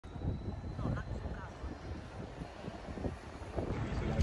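Outdoor city street ambience: wind buffeting the microphone over a low, uneven rumble of traffic, with two short high chirps about a second in.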